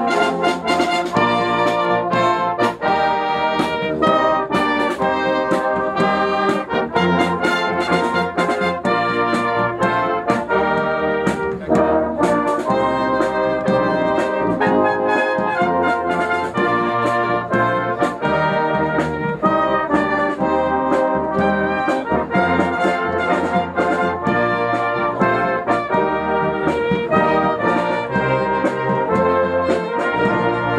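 Brass band playing a tune, trumpets and trombones together, loud and steady throughout.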